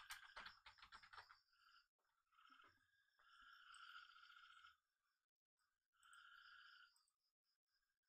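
Near silence, with faint computer keyboard typing, a quick run of key clicks in the first second or so. Two faint steady stretches of noise follow, in the middle and later on.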